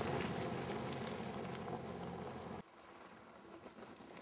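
Motor vehicle engine running steadily and slowly fading, cut off abruptly about two and a half seconds in, leaving near silence.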